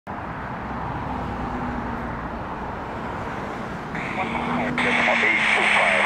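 Steady outdoor noise of wind and road traffic with a faint low hum. About four seconds in, an airband radio opens with a hiss and an air traffic control voice begins, thin and narrow-sounding through the receiver's speaker.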